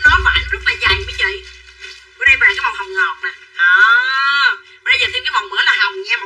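A woman talking fast and animatedly, with one long drawn-out exclamation about halfway through.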